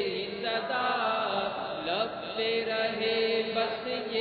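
Unaccompanied male chanting of an Urdu devotional verse (manqabat) in praise of a spiritual guide, drawn out in long, wavering held notes.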